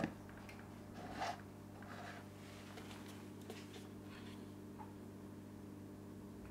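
Faint handling sounds of aquarium flake food being shaken from its pot: a soft rustle about a second in, then a few light ticks, over a steady low hum.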